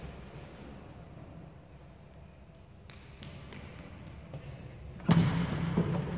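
A few soft taps of bare feet walking on a wooden gym floor, over quiet room tone. About five seconds in, a sudden louder rush of noise with a steady low hum sets in.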